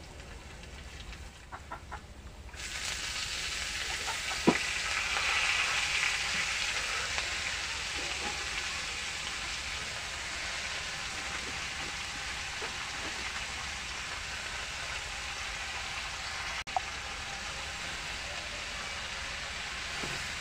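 Red amaranth leaves (lal shak) sizzling steadily as they fry in oil in a karahi, the sizzle starting about two and a half seconds in and strongest soon after. There is a single sharp knock about four and a half seconds in.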